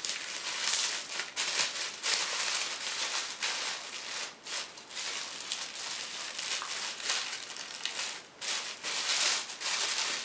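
Plastic wrapping being pulled and torn open by hand: a dense, continuous crinkling with many sharp crackles.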